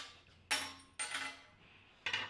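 Small steel vise parts (thrust bearing, washers, nut and threaded drive rod) being handled on a steel welding-table top. Two sharp metallic clinks about half a second apart, each ringing briefly.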